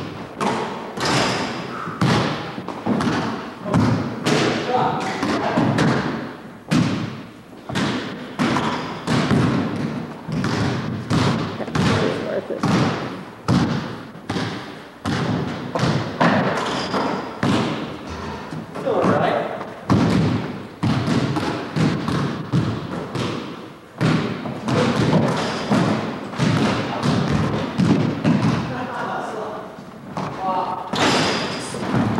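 Basketballs bouncing on a hardwood gym floor: a long run of repeated thuds, with players' voices among them.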